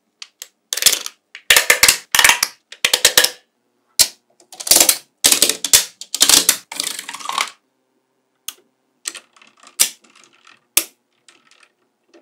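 Small magnetic balls clicking and clattering as they snap together onto a magnetic-ball structure. Quick rattling bursts run through the first seven seconds or so, then give way to a few sparse, sharp single clicks.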